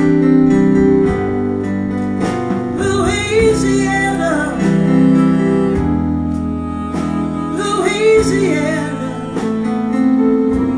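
Live band playing a slow song: sustained chords under a guitar melody that bends between notes, about three seconds in and again near eight seconds, with no words sung.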